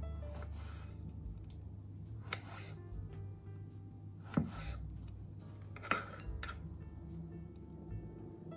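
Background music, with a few sharp knocks of a kitchen knife blade striking a wooden cutting board while strawberries are sliced; the two loudest knocks fall about halfway through and a second and a half later.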